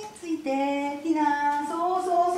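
A woman's high, sing-song voice drawing out long held notes, starting about half a second in.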